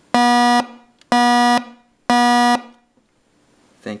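Battery-operated low-frequency smoke alarm sounding its test signal through its amplifier and large speaker: three loud, buzzy low beeps of about half a second each, one second apart, in the standard three-pulse smoke alarm pattern, pitched near middle C.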